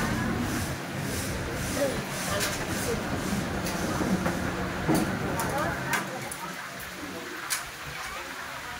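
Busy hawker food court ambience: a steady hubbub of people talking, with scattered voices and a few sharp clinks and clatters.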